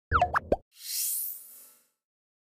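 End-card logo sound effect: a quick cluster of bubbly plops with sliding pitch in the first half second, then a rising airy swoosh that fades out.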